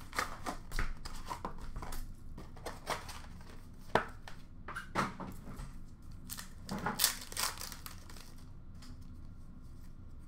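Cardboard retail box and foil-wrapped Upper Deck hockey card packs being handled and opened: rustling and crinkling of wrappers with a few sharp snaps and clicks, the clearest about four, five and seven seconds in.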